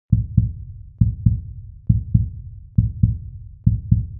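Intro music made of a low double thump like a heartbeat, repeating five times a little under a second apart.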